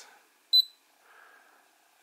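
A single short, high-pitched electronic beep about half a second in: the RunCam Split FPV camera's button-feedback beep as its Wi-Fi button is pressed to exit a settings menu.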